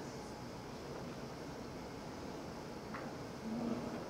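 Steady room noise of a quiet lecture room, a low even hiss with no speech. A faint click comes about three seconds in.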